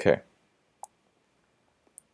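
A man says "okay", then a single short click a little under a second later, with a faint tick near the end; otherwise near silence.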